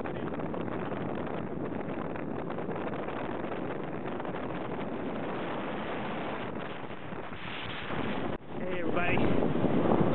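Steady rush of wind on the microphone with engine and water noise from a center-console boat running under way. It cuts off suddenly near the end and gives way to louder voices.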